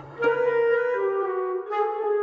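Quirky light-comedy orchestral music: a woodwind melody of held notes stepping in pitch comes in a fraction of a second after a brief lull, over a low bass note that drops out about three-quarters of the way through.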